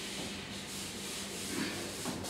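Felt-tip marker rubbing across a whiteboard as a lecturer writes, a steady soft scratching.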